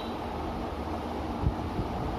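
Low steady background rumble, with a soft knock about one and a half seconds in as a plastic toy is taken from a plastic basket.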